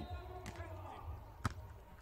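A beach volleyball struck with one sharp smack about a second and a half in, after a fainter hit near the start, over low steady stadium ambience.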